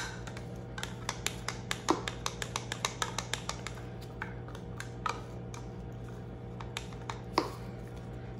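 Wooden stir stick clicking and tapping against a plastic pouring pitcher as mica is stirred into soap batter: an irregular run of light clicks, over a steady low hum.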